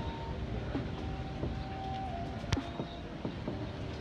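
Steady outdoor background rumble picked up by a phone microphone, with a faint held tone that drops slightly in pitch about halfway through and a single sharp click about two and a half seconds in.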